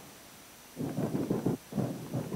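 Thin single-panel steel pickup cab roof being struck by hand, the sheet metal giving a quick series of low, rattling blows starting about three-quarters of a second in.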